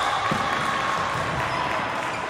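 Volleyball rally in a gymnasium: one dull thump of a ball contact about a third of a second in, over a steady murmur of voices and crowd noise echoing in the hall.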